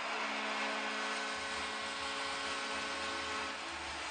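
Hockey arena goal horn sounding one long, steady chord over a cheering crowd, signalling a home-team goal.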